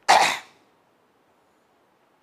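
A man's single short cough, about half a second long, right at the start.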